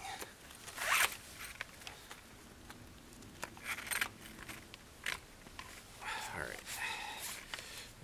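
Steel snare cable being handled and pulled through its lock: a few short zipping rasps, the loudest about a second in, with a longer stretch of rasping near the end.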